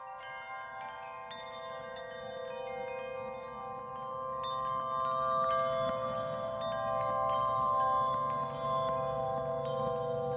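Background music: a calm ambient track of ringing chime and bell notes over sustained held tones, slowly growing louder.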